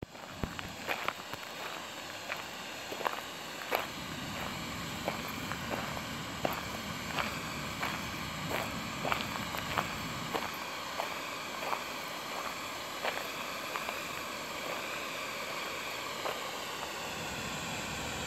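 Footsteps crunching on a gravel path at a walking pace, about two steps a second, fading out after about thirteen seconds. A steady rushing noise runs underneath.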